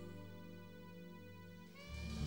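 Live jazz-pop band in a quiet lull: held notes fade away, then a soprano saxophone comes in on a long sustained note with the bass and band about two seconds in, and the music grows louder.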